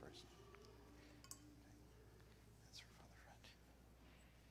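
Near silence: church room tone with a steady low hum and faint whispering, and one small click about a second in.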